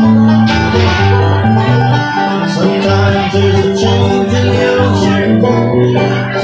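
Acoustic guitar and banjo playing a bluegrass tune together, with quick plucked banjo notes over the guitar's steady bass-note rhythm.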